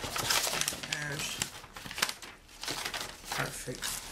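Paper wrapping and a cardboard insert crinkling and rustling as a wig is drawn out of its packaging: a run of crackles, loudest in the first second, with more rustles after it.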